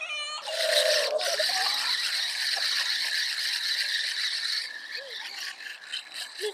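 A spinning fishing reel whirring with a dense rattle for about four seconds, then fading. A short voice sounds at the very start.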